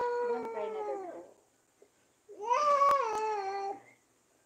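A baby crying: two long wails, the first trailing off about a second in and the second starting a little after two seconds.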